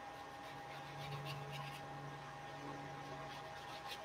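Faint taps and strokes of a paintbrush on wet watercolour paper, scattered light ticks over a steady low hum.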